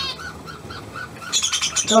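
Budgerigars calling: a quick run of short, evenly spaced chirps, then, from a little past halfway, a denser burst of higher, harsher squawking chatter.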